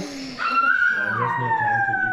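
A long, high-pitched vocal wail that starts about half a second in and slides slowly down in pitch.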